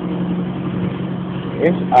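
Truck engine running steadily, a low even hum.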